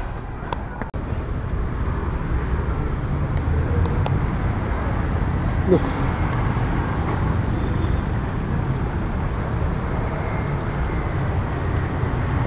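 Steady low rumbling background noise. A short rising sound comes a little before six seconds in.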